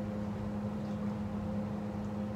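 A machine running with a steady, low hum and one held tone.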